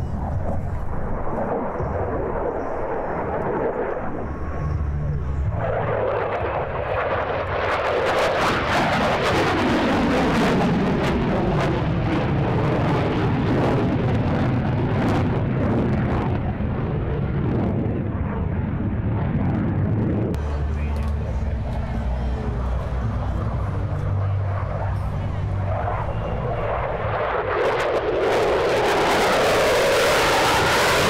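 F-16 fighter jet engine noise as the aircraft manoeuvres overhead, swelling and fading, with a falling pitch as it passes partway through. It gets louder near the end as the jet comes in close with its afterburner lit.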